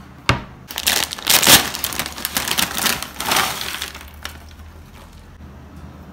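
Plastic tortilla chip packet being torn open at its crimped seal and crinkled: a sharp snap just after the start, then a few seconds of loud crackling rustle that dies away about four seconds in.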